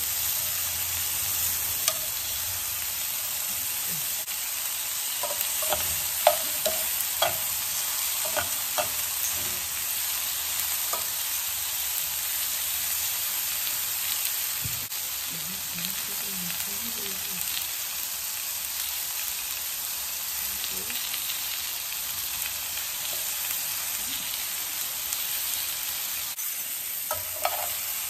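Button mushrooms and halved tomatoes sizzling steadily as they fry in butter in a nonstick frying pan. Metal tongs click against the pan now and then, most often in the first few seconds.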